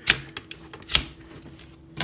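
Sharp plastic clicks from a transforming robot action figure's back-mounted cannons being moved on their joints: two strong clicks about a second apart, with a few lighter clicks between.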